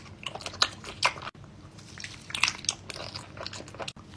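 Close-up eating sounds of biting into and chewing a red bottle-shaped candy: clusters of sharp clicks and mouth smacks, heaviest about a second in and again around two and a half seconds in.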